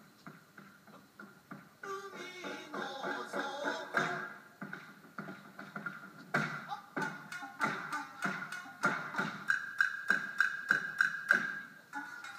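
Kabuki dance accompaniment: shamisen plucked in a steady rhythm, with a voice singing briefly near the start. Wooden geta clack sharply as they are stamped on the wooden stage floor. The strokes grow louder and more forceful in the second half.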